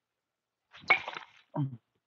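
A baseball bat hits a ball off a batting tee with one sharp hit about a second in, followed about half a second later by a dull thump.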